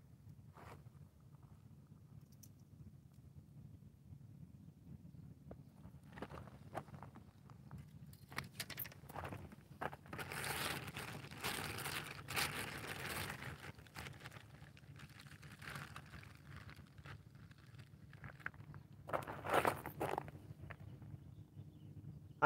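Faint rustling and crunching close to the microphone, in spells through the middle and again briefly near the end, over a low steady hum.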